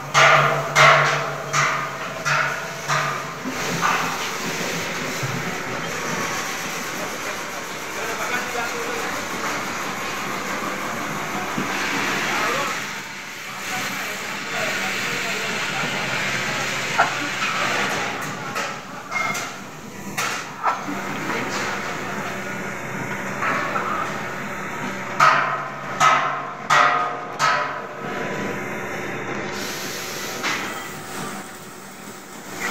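Automatic batasa (sugar drop) machine running, a steady mechanical hum with clusters of sharp knocks, several a second, during the first few seconds and again near the end.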